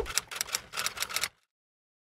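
Typewriter sound effect: a quick run of key strikes lasting about a second and a quarter, then stopping abruptly.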